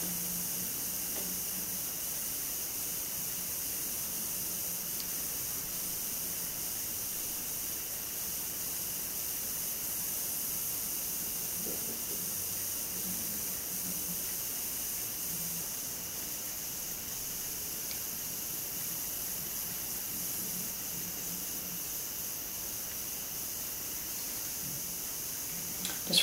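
Steady background hiss from the recording, with a faint low hum coming and going.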